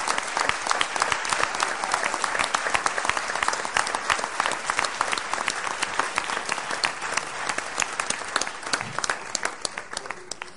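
Auditorium audience applauding, a dense mass of many hands clapping that thins out in the last second or so.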